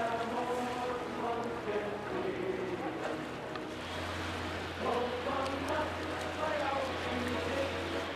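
A mix of voices and music, with a steady low hum that sets in about halfway through.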